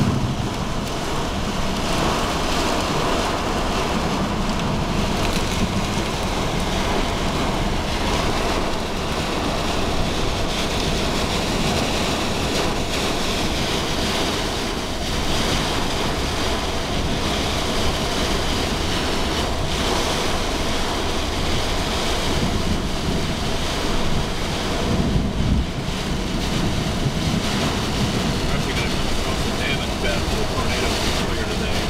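Heavy storm rain and wind on a moving car: a steady rushing noise with no breaks.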